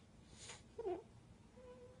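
A toddler girl crying quietly: a sniffle, then a short whimper just before a second in, and a faint, high, held whimper near the end.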